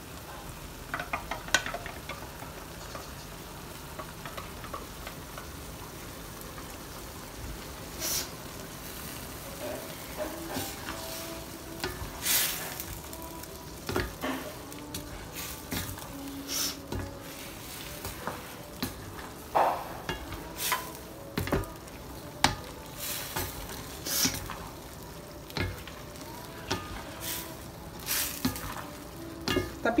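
Wooden spatula stirring and scraping wet fried noodles around a stainless steel wok as the sauce simmers and sizzles. The strokes come roughly once a second from about eight seconds in, over a steady hiss.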